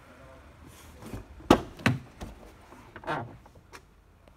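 A few sharp knocks and clicks, the loudest about one and a half seconds in, then a second one just after.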